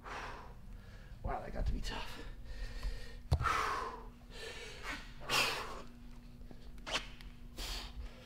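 A man breathing hard between efforts of a strenuous one-arm shoulder press, with a series of forceful, hissing exhales about a second apart. A single sharp knock comes about three seconds in.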